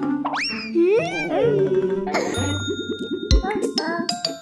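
Cartoon sound effects: a quick rising whistle and wobbling sliding tones, then a ringing bell-like ding over a low rapid rattle from about halfway.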